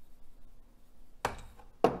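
Two sharp knocks about half a second apart, the second one louder, as a metal seasoning shaker is knocked against a hard surface.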